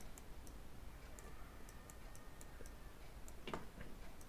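Faint, quick ticks of a stylus nib tapping on a pen tablet while numbers are written, a few a second at irregular spacing, with a short soft sound near the end.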